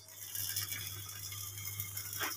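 Rustling and rattling handling noise from a hand-held phone being moved, over a steady low electrical hum.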